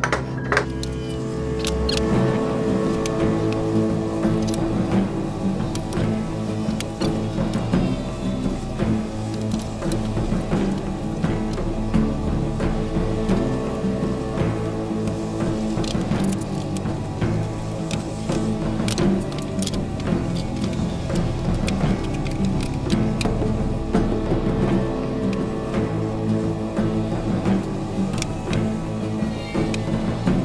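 Background music: a soundtrack with steady sustained notes and a low repeating rhythm.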